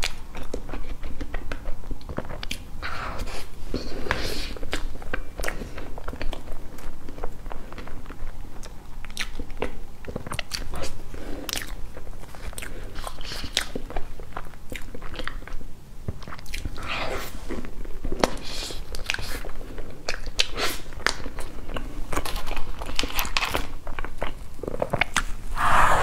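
Close-miked mouth sounds of a person eating soft cream sponge cake: wet chewing and smacking with irregular small clicks, plus occasional scrapes of metal cutlery on the foil-covered cake board.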